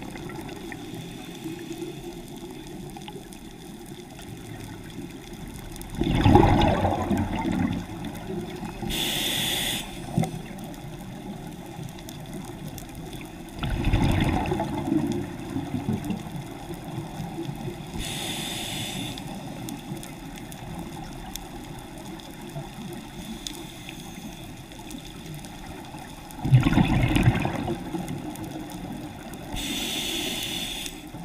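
Scuba regulator breathing underwater: three loud rushes of exhaled bubbles, each one to two seconds long, alternating with shorter, fainter hissing inhalations through the regulator, about one breath every ten seconds.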